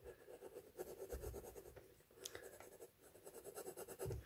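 Faint scratching of a hard 5H graphite pencil going over a drawn outline on tracing paper laid on a canvas, in short intermittent strokes, to transfer the outline onto the canvas.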